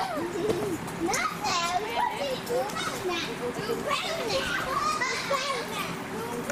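Zoo visitors' voices: children and adults chattering and calling out, several at once.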